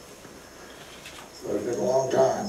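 Low room noise, then about one and a half seconds in a person's voice: a single drawn-out vocal sound that grows louder near the end.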